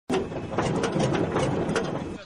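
Machinery running, with irregular sharp knocks about four or five a second over a low rumble.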